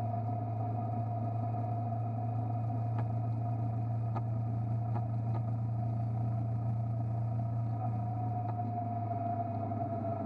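Motorcycle engine running steadily at cruising speed, a constant low hum with a higher steady tone above it. A few faint ticks come through at scattered moments.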